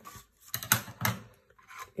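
Scissors snipping paper in several short cuts, trimming off excess paper that overhung the cutting die.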